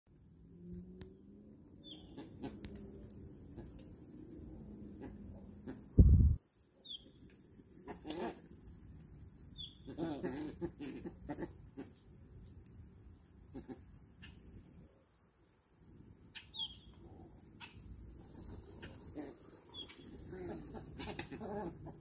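A flock of white ibises feeding at close range, giving scattered low calls with a few short high chirps and thin clicks among them. A single loud low thump about six seconds in.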